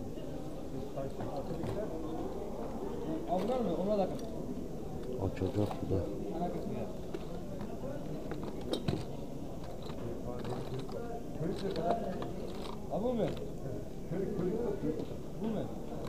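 Voices talking in the background, mixed with light clicks and clatter of small metal and plastic objects being moved about on a crowded table.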